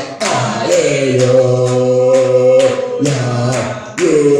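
Voices singing a worship song, holding one long note through most of the stretch, over a steady beat of about two strokes a second.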